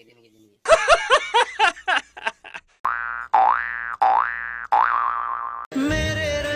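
Cartoon-style comedy sound effects: a quick run of short squeaky, chattering sounds, then four springy boings, each dipping and rising in pitch. Music starts just before the end.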